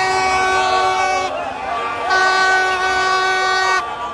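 A large vehicle's horn sounding two long, steady blasts, each about a second and a half, with a short gap between, over the noise of a crowd.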